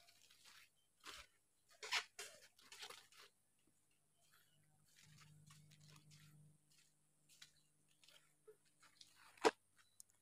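Very quiet, with a few faint, irregular crunching steps on a soil path in the first three seconds and one short sharp click about nine and a half seconds in.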